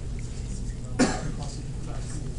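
A single short cough from a person in the room about a second in, over a steady low hum.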